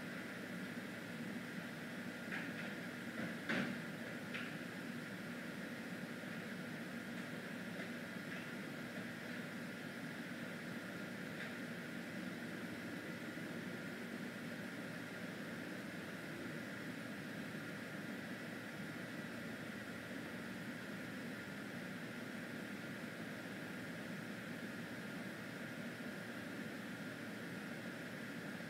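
Steady hum and hiss of a wall air conditioner running, with a few faint clicks about two to four seconds in.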